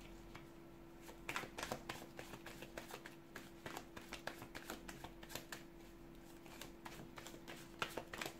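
A tarot deck being shuffled by hand, with quick irregular flicks and slaps of the cards starting about a second in, over a faint steady hum.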